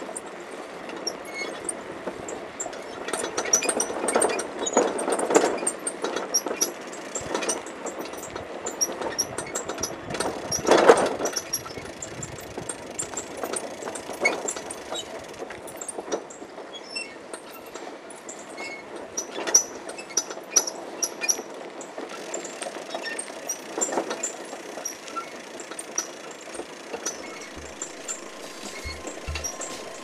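Outdoor sound picked up by a moving handheld camera: a rough rustling noise with many small clicks and knocks. It is loudest around four to six seconds in and again briefly near eleven seconds.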